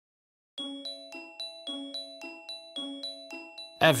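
Film score: a soft, tinkling bell-toned melody of struck notes, about four a second, starting after half a second of silence.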